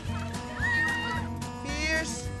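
Background music with long held tones, with a high wavering cry about halfway through and a louder rising, wavering cry near the end.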